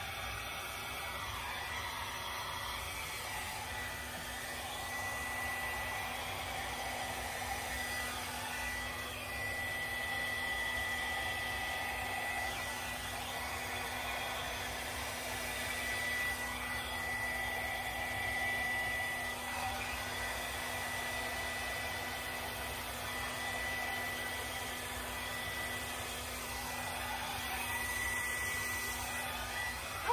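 Handheld hair dryer running steadily, blowing wet acrylic paint across a canvas: a rush of air with a thin high whine over it.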